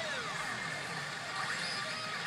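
e Hana no Keiji Retsu pachinko machine playing its bonus-round music and sound effects while it adds balls to the bonus count, with a few falling tones in the first second over a steady electronic wash.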